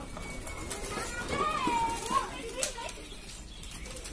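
Young children playing outdoors, their voices calling out, with one long drawn-out high call about a second and a half in and a couple of short sharp knocks just after it.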